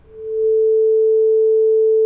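Steady 440 Hz sine tone from a Pure Data oscillator patch running on a Critter & Guitari Organelle, swelling up over the first half second as the volume knob is turned up, then holding one unchanging pitch.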